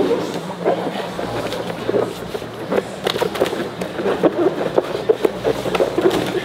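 Grappling on gym mats: irregular thuds and slaps of bodies and hands hitting the mat, with a few sharper impacts about a second and a half, three, and five seconds in.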